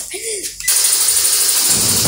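Slatted roll-up garage door opening after a keypad code: a steady running rattle and hum that starts abruptly about two-thirds of a second in.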